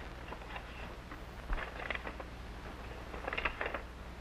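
Paper rustling and crackling in two short spells as a letter is drawn out of its envelope and unfolded, over a steady low hum from the old film soundtrack.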